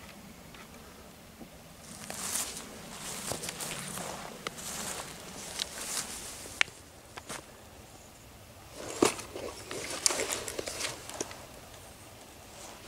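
Rustling of blackberry bramble leaves and dry forest undergrowth with footsteps, as someone moves through the brambles. It comes in two spells, from about two seconds in to about seven and again from about nine to eleven seconds in, with a few sharp snaps, the loudest about nine seconds in.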